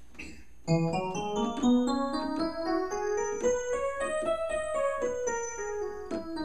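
Alesis QS8 synthesizer playing its FM electric piano preset without sustain pedal or other controllers. A melody starts a little under a second in, a line of overlapping notes that climbs steadily in pitch, then turns and comes back down near the end.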